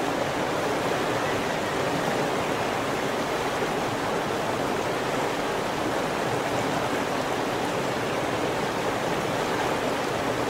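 Flowing river water rushing steadily.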